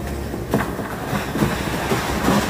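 A steady rushing noise with a low rumble underneath. It sets in at the start and dies away about half a second after the end.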